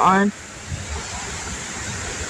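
Strong wind blowing through tall trees: a steady rushing noise. A short voiced sound from a person cuts off just after the start.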